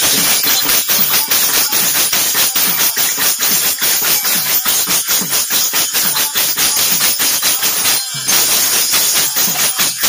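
Instrumental break of fast, rhythmic jingling metal percussion accompanying a folk stage play, with a short break about eight seconds in.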